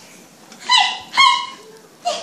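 Two short high-pitched cries about half a second apart, each sliding in pitch and then briefly holding.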